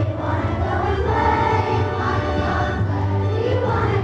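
Elementary school children's choir singing a song, sustained sung notes with no break.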